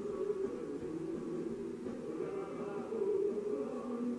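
Music playing in the room, with long held notes that shift in pitch.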